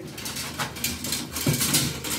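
Shower curtain rod being handled and taken down: light scraping and clicking of the metal rod and its plastic rings, with a short rising sound about one and a half seconds in.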